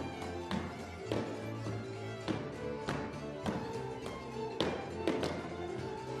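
Hungarian folk dance music with sustained fiddle and bass notes, over which the dancers' boots strike the stage floor in about seven sharp stamps, the loudest a little over halfway through.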